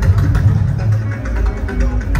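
Amplified Nigerian jùjú band music with a strong, steady bass line and pitched guitar notes, playing without a break.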